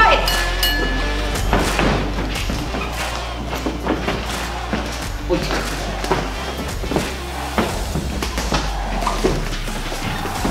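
Boxing gloves landing in a sparring exchange: a string of irregularly spaced thuds over background music with a steady bass. A short ringing tone sounds at the very start.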